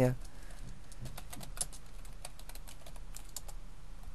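Computer keyboard typing: a quick, uneven run of key clicks lasting about three seconds, stopping shortly before the end.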